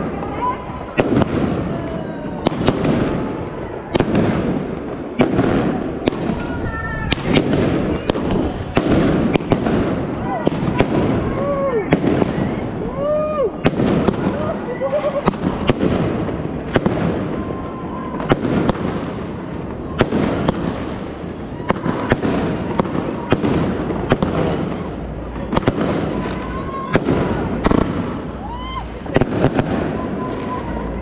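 Fireworks and firecrackers going off all around, many sharp bangs in irregular succession, several a second at times, over a steady murmur of people's voices.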